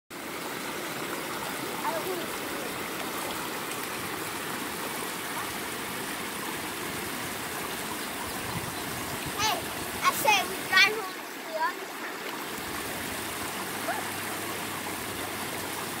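Steady rushing of shallow creek water spilling over a low concrete weir.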